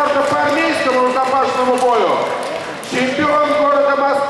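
A man's voice announcing in long, drawn-out syllables, introducing a fighter; only speech.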